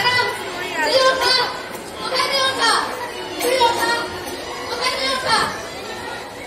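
Speech: actors' voices delivering lines in a stage play, picked up through the hanging stage microphones.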